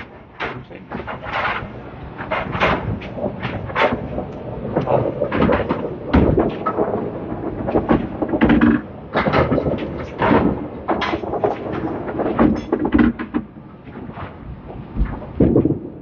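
Irregular knocks and clatter of candlepin balls and pins across the lanes of a bowling alley.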